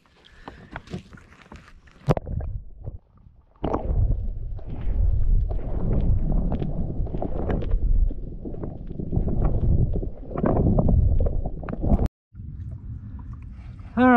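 Muffled water noise heard through a submerged camera: a low rumble with many small clicks and knocks. It starts suddenly about four seconds in and cuts off abruptly near the end.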